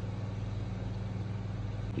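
A steady low hum over a faint even hiss, with no change.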